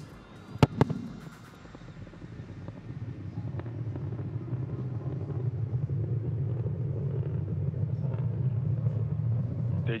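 Sonic booms from a returning Falcon 9 first stage: two sharp cracks in quick succession less than a second in. They are followed by the low rumble of the booster's Merlin engine on its landing burn, growing steadily louder.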